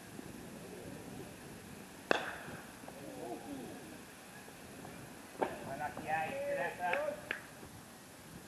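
A single sharp knock about two seconds in, then men's voices calling out, with a few smaller knocks in the second half.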